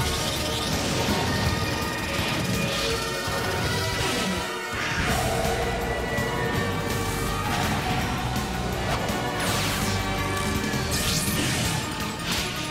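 Cartoon soundtrack music under swooshing and crashing sound effects of a magical armour transformation, with several sweeping whooshes and hits through the passage.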